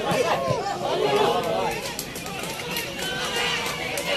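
Several voices of players and onlookers at a football match calling out and chattering over one another, with no clear words.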